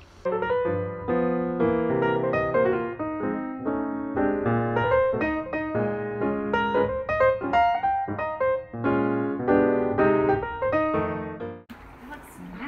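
Background piano music: a lively run of quick notes that starts suddenly and cuts off abruptly shortly before the end.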